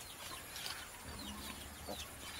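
Faint chicken clucking with scattered short, high chirping calls in the background.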